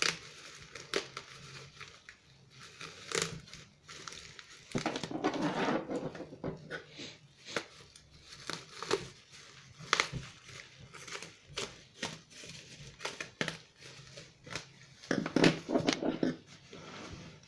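Thin plastic bag crinkling and rustling as it is handled, with a louder stretch of rustling about five seconds in and many short sharp clicks and snips throughout as the bag's knot is picked at and cut with small scissors.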